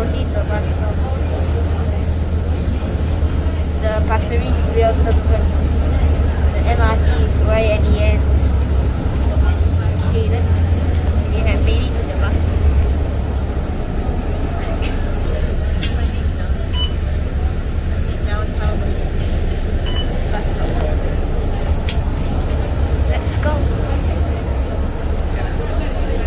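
A city bus's engine and drivetrain drone inside the passenger cabin as the bus drives, louder at first and easing in the second half as it slows. Voices murmur faintly in the background, and there are a few light rattles and clicks.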